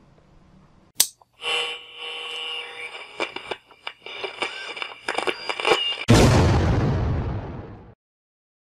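Sound effects for an animated channel-logo intro: a sharp crack about a second in, then a run of ringing tones and quick clicks, ending about six seconds in with a loud boom that dies away over about two seconds.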